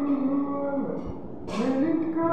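A man singing long, drawn-out notes. The first note fades out a little under a second in, and the next one rises in about one and a half seconds in.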